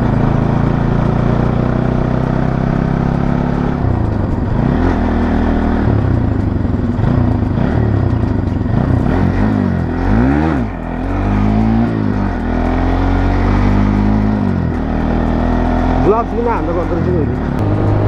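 Bajaj Pulsar NS200 single-cylinder engine running under way. Its pitch holds steady at first, then rises and falls repeatedly as the throttle and gears change.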